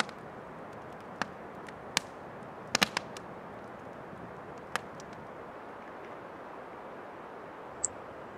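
Campfire crackling in a metal fire ring: a few sharp pops, several close together about three seconds in, over a faint even hiss.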